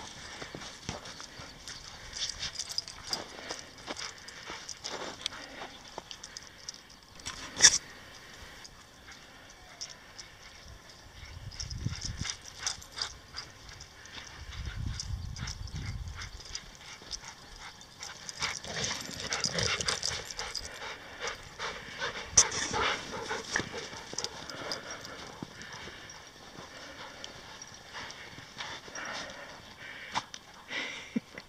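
Footsteps crunching through shallow snow, a steady run of short crunches with a couple of sharper knocks.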